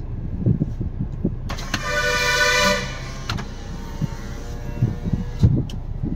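Maruti Suzuki Swift Dzire's 1.3-litre diesel engine idling steadily, heard inside the cabin. A car horn sounds for about a second, around two seconds in.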